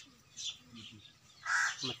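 A crow cawing: a faint call about half a second in, then a louder harsh caw near the end.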